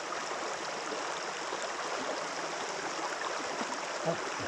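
Shallow creek running over a gravel and cobble bed: a steady rush of water.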